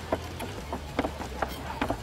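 Large chef's knife chopping soaked dried shrimp on a wooden cutting board: about five sharp, unevenly spaced knocks of the blade on the board, over a steady low hum.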